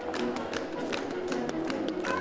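Bavarian folk dance music with a run of sharp slaps and stomps from Schuhplattler dancers striking their lederhosen and shoes in time with it.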